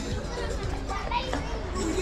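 Busy street ambience: a mix of voices in the background, some of them children's, with music playing somewhere nearby.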